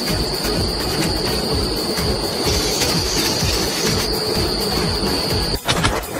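Steady high-pitched whine from a metalworking machine over a dense mechanical clatter. It cuts off suddenly near the end, followed by a couple of sharp knocks.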